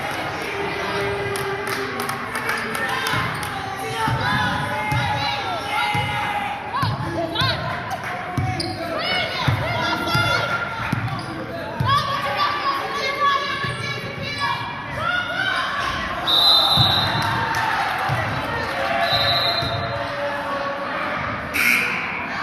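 Basketball being dribbled on a hardwood gym floor during play, mixed with voices echoing in a large gym.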